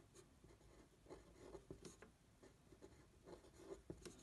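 Faint scratching of a pen on paper: a run of short, irregular strokes as handwritten lettering is put down.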